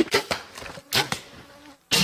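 A few sharp knocks or snaps, each dying away quickly: two close together at the start, one about a second in and one near the end.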